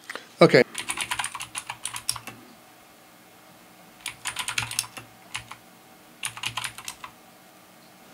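Computer keyboard typing in three bursts of rapid keystrokes, as terminal commands are typed and entered, with a short loud sound right at the start.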